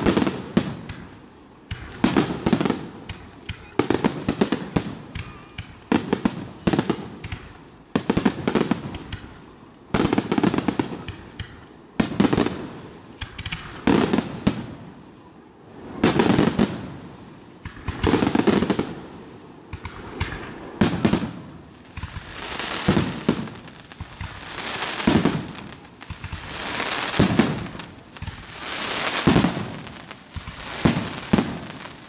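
Aerial firework shells bursting overhead: loud bangs about every two seconds, often in pairs, each trailing off in a rolling echo. In the last third a denser, continuous crackle fills the gaps between the bangs.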